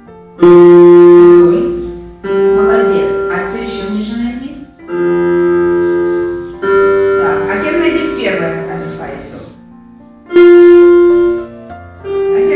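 Electronic keyboard with a piano sound, played one note at a time by a beginner: five single notes alternating between F and G, each struck and left to ring for a second or two before the next, with pauses between them.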